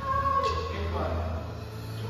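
A badminton player's short high-pitched call, held and then swooping in pitch, with a sharp racket hit on a shuttlecock about half a second in.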